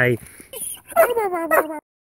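A dog whining in a couple of short, high calls that slide down in pitch, cutting off suddenly near the end.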